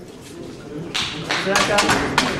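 A run of sharp claps starting about a second in, roughly three or four a second, mixed with a few voices: scattered applause for a completed squat.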